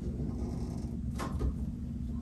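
Quiet handling of a plastic under-sink drain trap, with one brief faint scrape about a second in, over a low steady hum.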